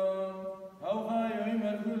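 A man chanting the Gospel in Syriac, holding long steady notes. About half a second in he stops briefly for breath, then takes up the chant again.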